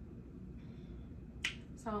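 A quiet pause with faint room tone, broken by a single short, sharp click about a second and a half in.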